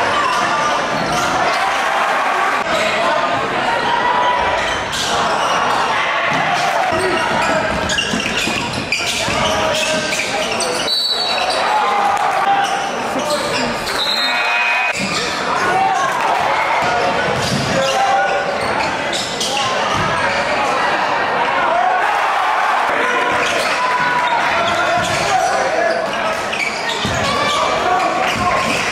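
Basketball dribbling and bouncing on a hardwood gym floor during play, under a steady hubbub of crowd chatter echoing in a large gymnasium.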